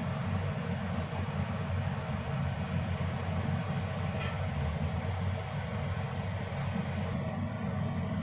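Steady low rumble and hiss of a gas stove burner heating oil in a wok, with a faint brief crackle about four seconds in.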